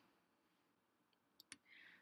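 Near silence, with a faint short click about one and a half seconds in and a soft hiss just before the voice returns.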